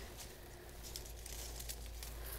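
Faint rustling of cut evergreen sprigs being handled, with a few soft crackles, as variegated holly is pulled from a pile to add to a hand-held bundle of fir, pine and cedar.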